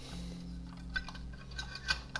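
Faint clicks and taps of a Coleco Adam Data Drive's black plastic housing being handled and pressed into place, a few about a second in and more near the end, over a steady low hum.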